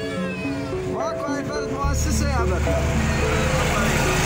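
Background music with held notes and a voice, cut off about two seconds in by the steady low rumble of a running truck engine.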